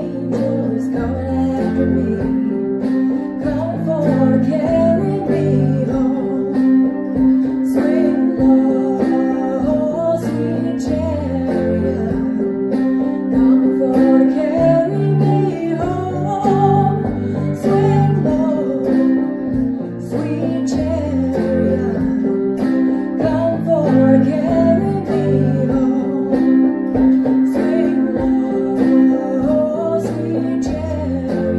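Portable electronic keyboard played with both hands in a repeating bass and chord pattern, with a woman singing over it.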